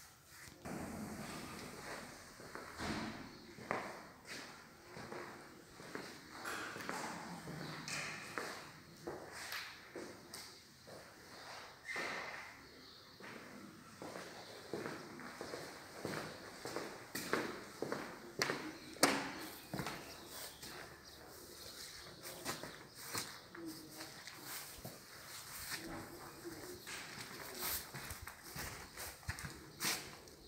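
Footsteps on hard floors with scattered, irregular clicks and knocks of handling as someone walks through empty rooms.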